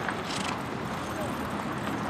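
A pair of horses trotting on grass and pulling a four-wheeled carriage, its hoofbeats soft and its wheels rolling in a steady rumble.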